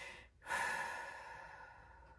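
A woman's long, exasperated sigh: a brief breath in, then a long exhale starting about half a second in and fading away, out of frustration at stumbling over the words she is trying to read.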